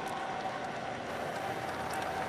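Steady background ambience of a televised track-and-field broadcast between commentators' remarks, an even hiss-like wash with a faint steady tone, heard through a video call's screen share.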